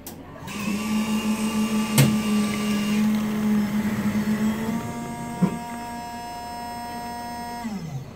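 Coffee vending machine humming steadily as it brews and dispenses coffee into a paper cup, with a sharp click about two seconds in and another past five seconds. The hum falls in pitch and stops just before the end as the dispense finishes.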